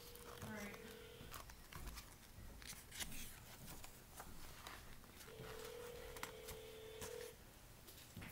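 Faint rustling and soft clicks of a picture book's paper pages being handled and turned. A faint steady tone sounds twice for about two seconds, once at the start and again past the middle.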